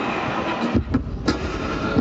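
Loud live loop-based music, recorded close to distortion: sustained looped acoustic-guitar chords with sharp percussive hits, and a heavy bass rumble that comes in about a second in.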